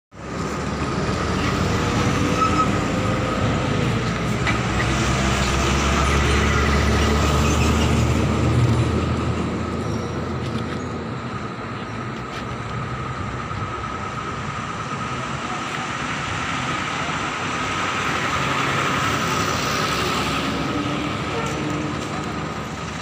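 Road traffic by a highway: a heavy vehicle's engine is loud and low for about the first ten seconds, then fades, leaving steadier, quieter road noise with a constant high whine.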